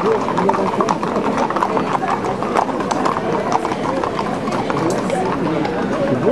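Hooves of several Camargue horses clip-clopping on asphalt as a group walks past, an irregular clatter of many hoofbeats.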